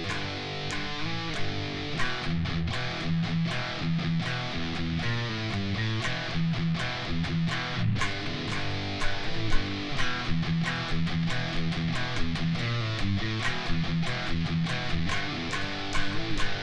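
Electric guitar, a Sterling, playing a metal riff built on an E power chord: rapid picked notes with pull-offs to the open low E string and shifts between power-chord shapes.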